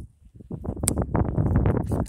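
Fingers rubbing and tapping on a phone close to its microphone: a fast, irregular patter of scratchy knocks, with one sharp click near its start.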